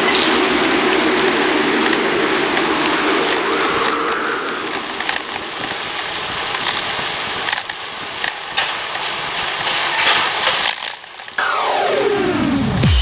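Steady rushing, crackling wind and rolling noise on a bicycle-mounted camera's microphone while riding. Near the end a falling electronic sweep cuts in.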